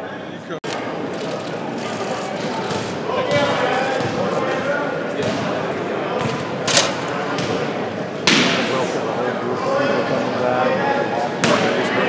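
Indistinct chatter of several people talking at once, with a few sharp knocks about seven, eight and eleven seconds in.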